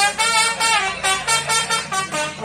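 Brass band dance music: horns play short pitched notes, some gliding, over a steady drum beat.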